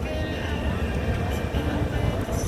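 Busy outdoor street ambience: indistinct voices over a steady low rumble of vehicle noise.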